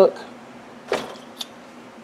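Notebooks being handled in the hands: one brief soft knock about a second in and a fainter click shortly after, over quiet room tone.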